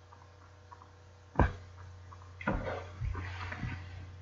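A sharp knock about a second and a half in, then rustling and a few softer knocks, over a steady low hum.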